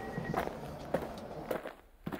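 Footsteps walking along a train carriage aisle, about two steps a second, cutting off near the end.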